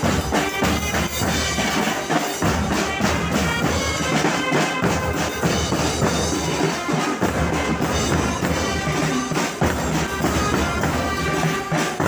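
Band music outdoors: bass drums with cymbals mounted on top and snare drums beat a steady march rhythm, with a held wind-instrument melody playing over the drums.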